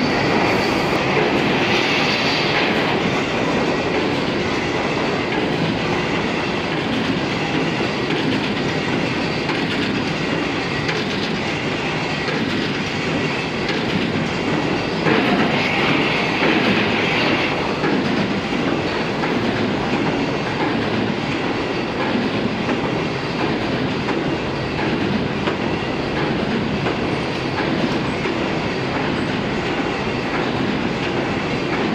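Automatic corrugated carton box stitching machine running, a steady mechanical clatter from its feed rollers, conveyor and stitching head. A brighter hiss rises over it briefly about two seconds in and again for a couple of seconds around the middle.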